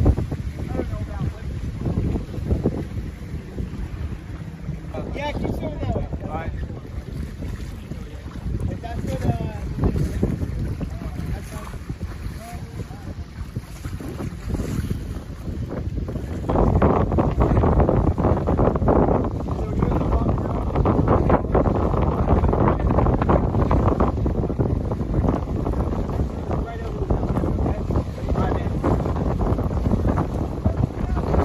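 Wind buffeting the microphone over choppy water, with swimmers splashing, and faint voices calling in the first half. The noise grows clearly louder a little past halfway.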